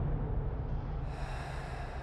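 Trailer sound design: a deep low rumble left over from a closing hit, fading away. About a second in, a hiss with faint steady tones rises above it.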